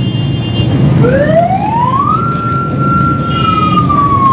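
A siren sounding one wail: its pitch rises for about a second, holds, then slowly falls, over the steady rumble of street traffic.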